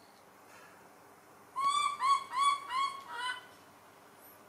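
Baby macaque giving a run of five short, high coo calls in quick succession, starting about a second and a half in, each rising slightly and then dropping.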